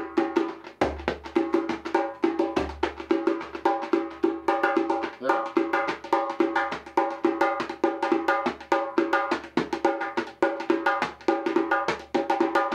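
A djembe played with bare hands in a fast, continuous rhythm that combines the drum's three strokes (slap, tone and bass), with deep bass strokes about a second in and again near three seconds.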